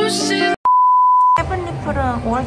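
Background pop music cuts off about half a second in, followed by a single steady, high electronic beep lasting under a second; then a woman's voice begins.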